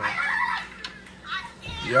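Indistinct voices talking, a short burst in the first half second and more speech rising near the end.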